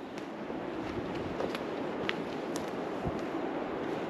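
Steady wind blowing through coastal pine trees, an even rushing noise, with a few faint, irregular clicks.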